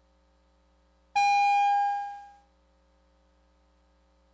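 A single ring of the legislature's division bell, which calls members in for a vote: one clear tone that starts suddenly about a second in, holds briefly and then fades out over about a second. The rest is near silence.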